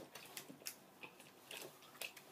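Near silence with a few faint, scattered clicks: mouth sounds of someone chewing a chewy candy.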